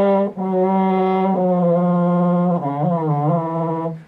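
French horn played hand-stopped in its low range: several held, buzzy notes stepping downward. The last and lowest note wavers in pitch. This is below the range where hand stopping works well, and the notes have absolutely no center.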